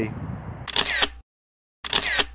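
Camera shutter sound, twice: a short whirring burst that ends in a sharp click, then dead silence, then the same shutter sound again near the end.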